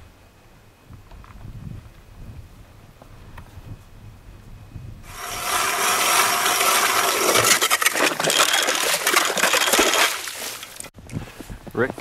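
Ice auger boring a hole through the lake ice: a loud, steady grinding scrape that starts suddenly about five seconds in and stops about five seconds later, after faint low rumbling.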